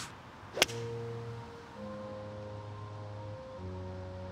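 A single crisp crack of a six iron striking a golf ball about half a second in, followed by background music of slow, held chords that change twice.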